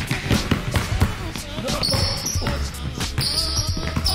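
A basketball is dribbled on a hardwood gym floor, bouncing repeatedly. Background music with a steady low bass runs underneath, and more music comes in about halfway through.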